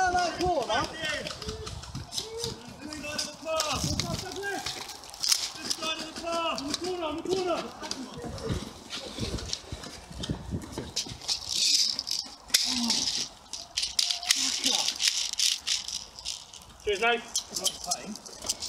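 Airsoft skirmish sounds: shouting voices, then rapid clicking and rattling from airsoft gunfire in the second half. Past the middle there is a single sharp bang with a hiss, which the players call a good grenade.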